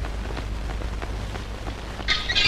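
A steady noise hiss with faint scattered crackling ticks over a low hum.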